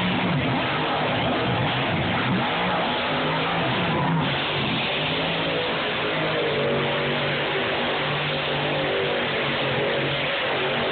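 Monster truck engines revving and running hard as two trucks race around a dirt track, heard from the grandstand over a noisy background, with a short break about four seconds in.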